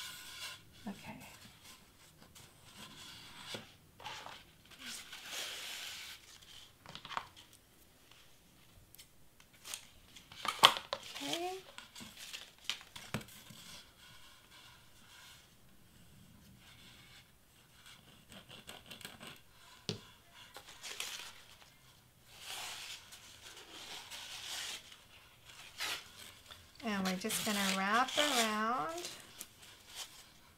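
Paper streamer rustling and crinkling as it is pulled and wrapped around a foam wreath form, in scattered short bursts, with one sharp tap about a third of the way in. A voice murmurs briefly near the end.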